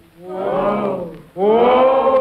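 Several voices crying out together in two long, swelling shouts, the second louder, as a dramatic chorus in a radio verse play.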